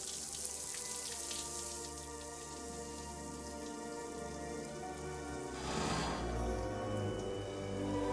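Shower spray hissing steadily from a shower head, over soft background film music.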